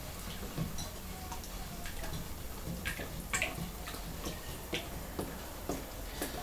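Stick stirring raku glaze in a plastic bucket: irregular light knocks and clicks of the stick against the bucket.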